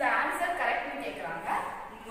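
A woman's voice speaking, in speech the recogniser did not transcribe.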